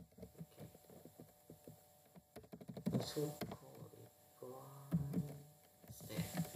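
Computer keyboard typing: a run of quick, light key clicks. Twice midway, about three seconds in and again near five seconds, a person briefly hums or murmurs.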